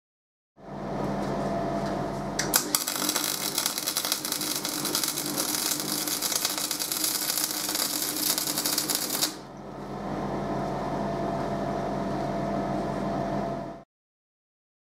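MIG welder laying a bead on a steel tube joint: the arc crackles and sputters for about seven seconds, starting a couple of seconds in. A steady hum runs under it and carries on alone after the arc stops.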